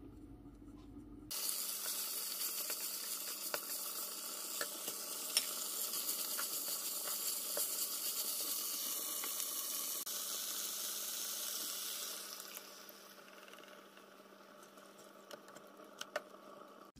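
Chicken, bamboo shoots and red curry paste sizzling in oil in a frying pan while being stirred with a wooden spatula, which gives occasional light knocks against the pan. The sizzle starts abruptly about a second in and dies down after about twelve seconds.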